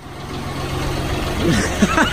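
The diesel engine of a John Deere 5075E tractor idling steadily, with voices coming in about halfway through.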